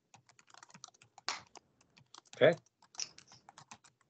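Quiet, irregular clicking of a computer keyboard being typed on, with a brief spoken 'okay' about two and a half seconds in.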